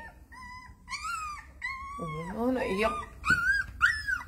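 Young puppies whining: high, drawn-out cries in several runs over about the first two seconds and again near the end.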